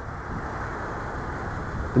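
Steady low rumble and hiss of outdoor background noise, even throughout with no distinct event.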